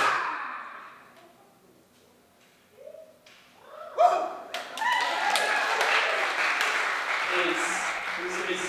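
A sudden loud sound at the start rings out in the hall and fades away. From about four seconds in, an audience whoops and breaks into applause that keeps going.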